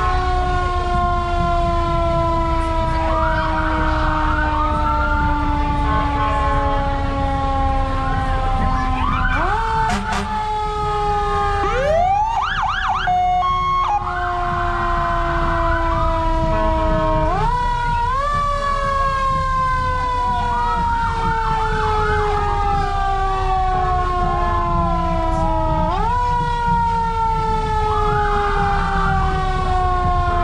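Emergency vehicle siren sounding throughout, its wail sliding slowly down in pitch and jumping back up about every eight seconds, three times. A second, steeply rising siren wail cuts in briefly about twelve seconds in.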